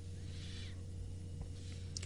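A pause in a man's recorded speech: a steady low electrical hum with a faint tone above it and light hiss from the recording, and a faint brief breathy sound about half a second in.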